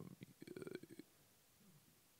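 A man's faint, creaky hesitation sound, a drawn-out "uhh" in vocal fry, during the first second, followed by near silence.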